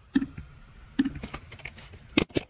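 Clicks on a computer keyboard: a handful of separate keystrokes, about six in two seconds.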